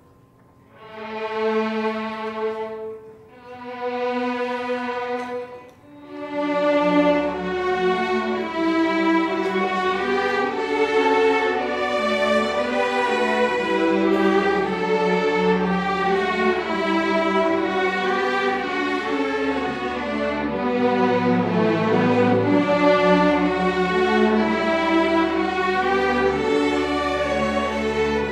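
String orchestra playing a ballad. Two held, swelling chords open it, then the full ensemble carries on from about six seconds in, with the low bass line entering.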